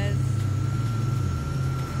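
Small open speedboat's engine running steadily at low speed through the harbour: a low hum with a thin, steady high whine over it.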